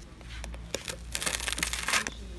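Knife slicing through roasted garlic bread, its crisp crust crunching: a few scattered crackles at first, then a dense, loud run of crunching in the second half as the blade goes through.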